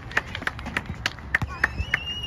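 Hand claps, about five a second at an uneven beat, with a high voice calling out near the end.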